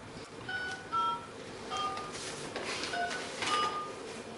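Touch-tone telephone keypad dialing: about five short two-pitch beeps at uneven intervals as a number is keyed in, from a recording of a phone call played back over the room's speakers.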